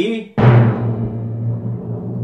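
Suspense timpani roll: it starts with a sudden hit about a third of a second in and carries on as a steady, pulsing low rumble.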